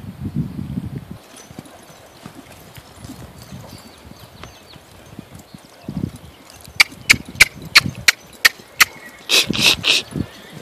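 A saddled horse worked on longlines: a steady run of about seven sharp clicks, roughly three a second, begins as it moves off, followed by a louder, denser burst of clicks just before the end.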